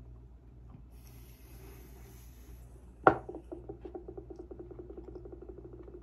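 Drawing on a disposable vape: a faint airy hiss for about two seconds, then near the middle a sudden onset and a low, rapidly pulsing creaky hum from the throat as the vapour is breathed out.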